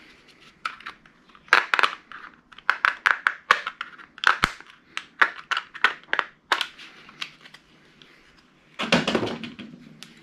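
Sharp cracks, snaps and clicks of a VCR circuit board being pried with a screwdriver and broken apart by hand, in quick clusters over the first seven seconds, then a louder scraping crunch near the end.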